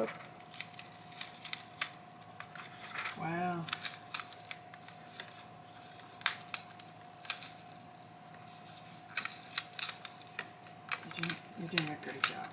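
A TI-99/4A's plastic keyboard membrane sheets being peeled apart and handled, giving scattered crinkles and small clicks. A brief hummed voice sound about three seconds in, and a faint steady high hum underneath throughout.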